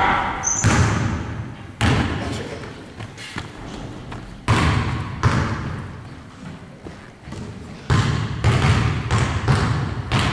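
Basketballs thudding on a hardwood gym floor, each hit trailing off in the long echo of a large gym. There are a handful of separate thuds, then a quicker run of them near the end.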